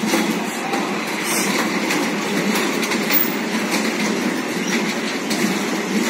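Rotating carousel platform of toy ride-on cars running: a steady mechanical rumble with scattered clicks and rattles.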